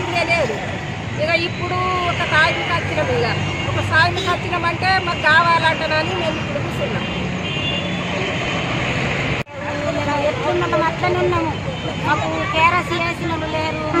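A woman speaking in Telugu, with a steady low background hum beneath her voice. The sound drops out for an instant about nine and a half seconds in, at an edit, and speech carries on after it.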